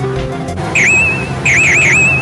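A high whistling sound effect: one dipping swoop, then three quick swoops in a row that trail off into a wavering whistle.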